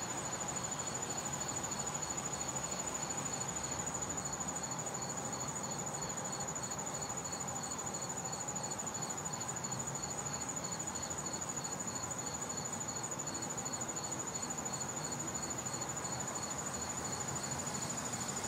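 Insects chirping steadily: one high, unbroken trill with a second chirp pulsing about three times a second, over a faint outdoor hiss.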